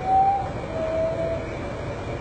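Common potoo singing: the last two notes of its descending series of whistles, each lower than the one before, the second longer than the first, over a steady low background hiss.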